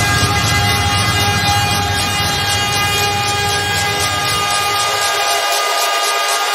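Hardcore electronic music in a breakdown with no kick drum: a loud, sustained, horn-like synth chord held steady, over a low rumble that fades out about five and a half seconds in.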